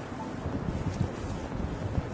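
Wind buffeting the microphone of a handheld camera outdoors, an uneven low rumble, with street traffic faintly underneath.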